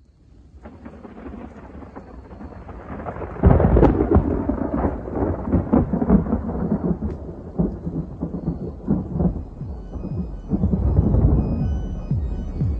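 Rolling thunder with rain. It swells up out of silence and gets much louder about three and a half seconds in.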